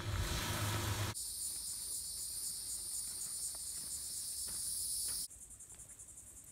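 A steady high-pitched chorus of insects buzzing in the woods, coming in about a second in after a moment of low noise. Just after five seconds it drops suddenly to a fainter, rapidly pulsing insect trill.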